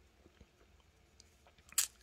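Faint clicks and rustles of a stack of glossy trading cards being gathered and squared in the hands, with one short, sharp click near the end.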